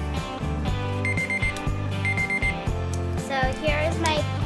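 Digital timer alarm beeping in two quick groups of four identical high beeps, a second apart, over background pop music; the alarm signals that the drawing time is up. A singing voice in the music comes in near the end.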